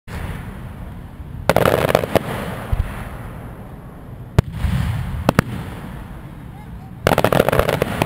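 Aerial fireworks display: sharp bangs of shells bursting about a second and a half in, near the middle, and twice more just after, with a short run of crackling after the first. A dense crackling barrage starts about a second before the end.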